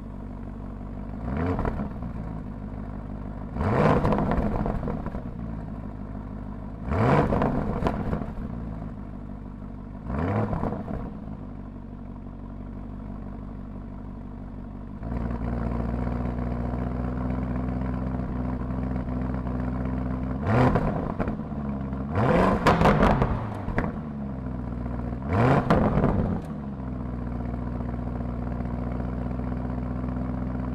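Lamborghini Urus S's 4.0-litre twin-turbo V8 with Akrapovič sport exhaust idling and being blipped in short free revs, about eight times, each rising and falling back within a second or so. The idle grows louder about halfway through.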